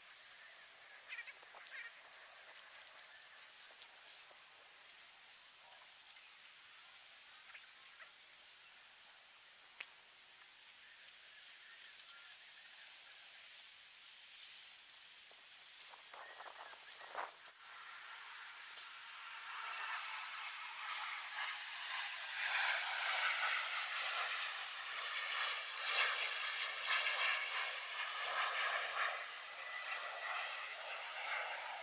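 Faint rustling and small snaps of sweetcorn stalks being handled and pulled up. From about 20 seconds in, a passing vehicle's engine grows steadily louder and stays loud to the end, drowning out the rustling.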